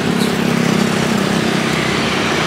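Small motor scooter engine running as it rides past close by: a steady, even drone over road noise.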